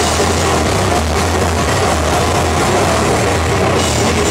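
Live heavy rock band playing loud, with a sustained low bass-guitar drone under dense distorted guitar and cymbal wash.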